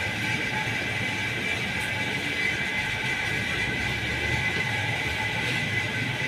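Steady machine noise: a constant hum with an even, high-pitched whine running throughout.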